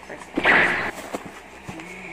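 A cardboard box being pulled open by hand: one short, loud rip or rustle of cardboard and packing less than a second in, followed by a couple of light knocks.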